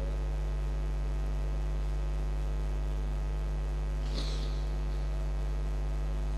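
Steady electrical mains hum from the microphone and sound-system chain: a low, even buzz with its overtones. A faint short hiss comes about four seconds in.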